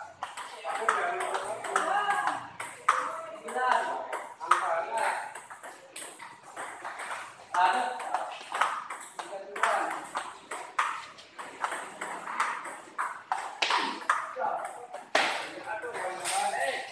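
Table tennis balls being hit in rallies: sharp, quick clicks of the ball off paddles and table tops at an irregular pace, with people talking in the background.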